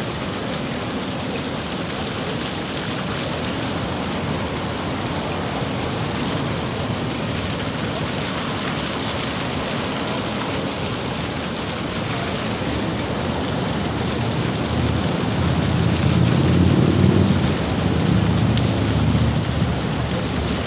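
Flaming fountain burning: a steady rushing hiss of gas flames and water. About 15 seconds in, a louder low rumble swells for a few seconds, then eases.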